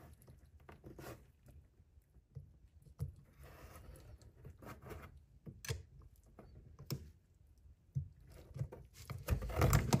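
Scattered light metal clicks and scrapes of circlip pliers and a thin rod working a retaining circlip off the sun gear in a Laycock D-type overdrive's clutch sliding member, with a brief scrape about four seconds in and louder handling noise near the end as the clip starts to come free.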